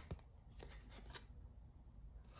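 Trading cards being handled and slid over one another by hand: faint, with several light clicks of card edges.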